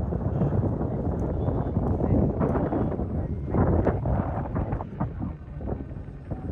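Wind buffeting the microphone: a gusty low rumble that eases somewhat near the end.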